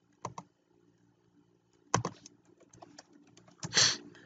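Typing on a computer keyboard: scattered keystrokes with a run of faint light taps in the second half, and a couple of louder knocks, one about two seconds in and one near the end.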